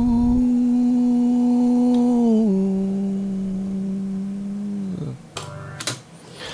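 A man's unprocessed singing voice holds a long note on the word "cruel". The pitch steps down about two and a half seconds in, and the note fades out at about five seconds. A short burst of noise follows near the end.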